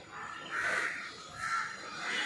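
Harsh bird calls from outside, two of them, the second about a second after the first.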